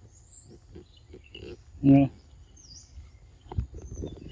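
A single short, low 'mm' voice sound about two seconds in, the loudest thing here, amid faint taps and two brief bird chirps.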